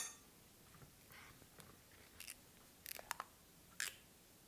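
Kitchenware being handled on a countertop: a sharp click at the start, then several faint, scattered taps and clicks of glass and metal.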